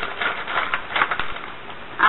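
Small objects being handled and rummaged through: an irregular run of clicks and rustles that dies down after about a second and a half.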